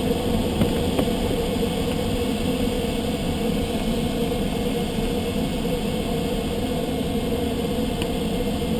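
Steady rush of airflow inside a glider's cockpit in flight, with a steady hum beneath it.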